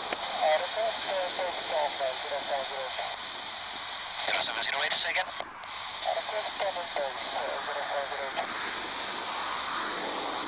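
Air traffic control voices over an airband radio scanner: thin, hissy transmissions in two spells, one in the first three seconds and another from about four to nine seconds in.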